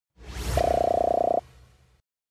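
Electronic outro sound effect: a whoosh swells in, then a buzzy pulsing synth tone holds for just under a second and cuts off, leaving a faint fading tail.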